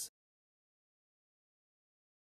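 Silence: the sound track drops to dead, digital silence.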